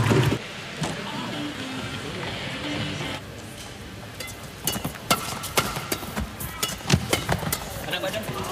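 A few seconds of arena background sound between points, then a men's doubles badminton rally starting about four and a half seconds in: a run of sharp racket hits on the shuttlecock with short shoe squeaks on the court floor.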